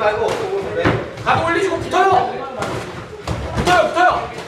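Boxing gloves landing punches during sparring: a few sharp smacks spread over the seconds, with voices talking alongside.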